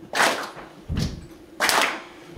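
An audience is doing a stomp–clap rhythm, feet stomping on the floor and hands clapping in unison in turn, one beat about every 0.7 s. A clap comes near the start, a stomp about a second in, and another clap near the end.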